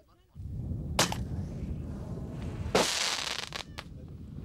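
Gunfire in a live-fire exercise: one sharp rifle shot about a second in, then a louder, longer blast of fire lasting nearly a second just before three seconds in.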